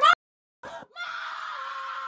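Woman screaming "mom": a short cry, then a long, steady, high wail held for about a second, starting about a second in.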